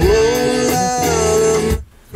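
A song with guitar playing loudly over a car's Bose audio system, stopping abruptly shortly before the end.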